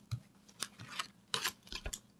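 Tarot cards being drawn from the deck and handled: a scattering of short, crisp clicks and snaps, with a couple of soft low knocks.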